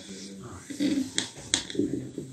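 A few sharp clicks a little past a second in, from a handheld microphone being handled as it is picked up, with a faint, indistinct voice under them.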